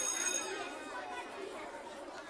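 Faint chatter of many overlapping voices, fading out, under the last dying ring of a jingle's closing hit.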